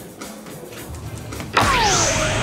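Electronic soft-tip dartboard's hit sound effect: about one and a half seconds in, a dart lands and sets off a loud synthesized effect with a falling tone. A faint click comes just at the start.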